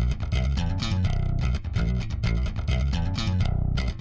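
Rock band music led by a prominent electric bass guitar line, with guitar above it.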